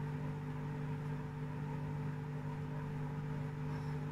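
Steady low hum of a running motor, holding several fixed tones without change.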